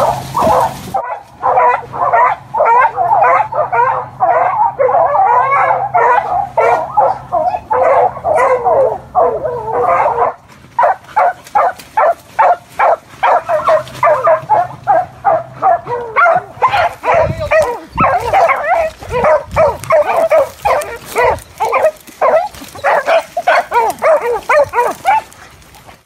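A pack of beagles in full cry, giving tongue on the line of a rabbit. The calls overlap densely for the first ten seconds, then come more spaced at about two to three a second, and break off shortly before the end.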